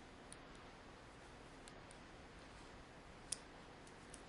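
Near silence: quiet room tone with a few faint, small clicks, and one sharper click about three seconds in.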